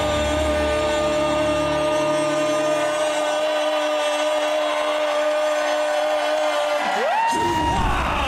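A ring announcer's amplified voice through a microphone, holding one long drawn-out call for about seven seconds before jumping up in pitch near the end, over a crowd cheering in a large hall. A music bed fades out in the first few seconds.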